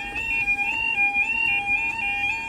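UK level crossing audible warning (yodel alarm) sounding: a loud two-tone warble that switches between two pitches about three times a second. It is the warning given as the barriers lower for an approaching train.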